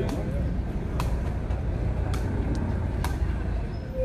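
Sepak takraw ball struck by players' feet and bodies in a rally: sharp knocks about once a second over a steady low rumble.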